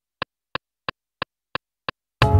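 Akai MPC metronome ticking steadily, about three short clicks a second, as a count-in before a pattern is played in on the pads.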